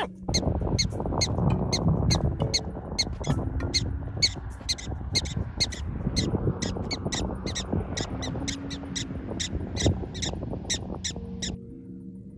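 Black-tailed prairie dog warning bark: a rapid run of short, high chirps, about four a second, kept up throughout, the alarm call given on seeing a predator or sensing danger. A steady low rumbling noise runs underneath.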